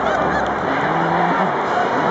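Large stadium crowd at a baseball game shouting and cheering, a dense wash of many voices, with a short held low honk-like note about a second in.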